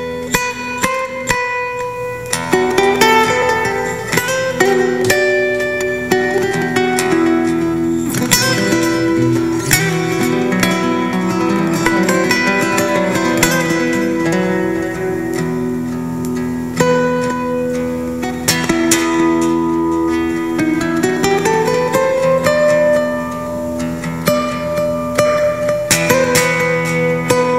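Instrumental guitar music: plucked melody notes over held low notes, with a few sliding notes, one rising clearly near the end.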